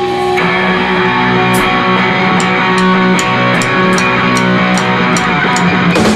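Live punk rock band playing an instrumental passage with no vocals: distorted electric guitar and bass ring out. From about a second and a half in, a drum-kit cymbal is tapped about two and a half times a second.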